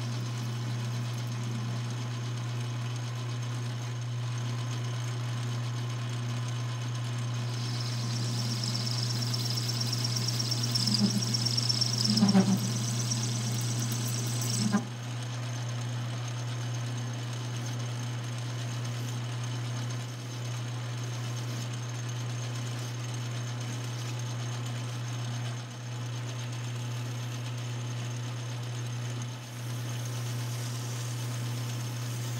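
Small metal lathe running with a steady motor hum. From about a quarter of the way in until about halfway, the spinning aluminum stock being cut adds a high hiss with a few rattles, which stops suddenly. After that only the lathe hum remains.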